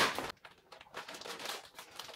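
A sharp click at the very start, then faint, irregular rustling and crinkling of a plastic bag of frozen meatballs being handled.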